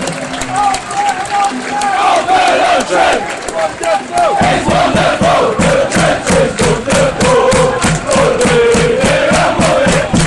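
Football crowd singing a chant together, with a steady rhythmic beat of about three strokes a second joining in about four seconds in.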